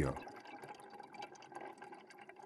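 Faint underwater fizzing and crackling of rising air bubbles from scuba divers descending.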